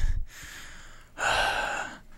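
Two breathy, hissing bursts like gasps: a short one right at the start and a longer one about a second in, with a faint hiss between them.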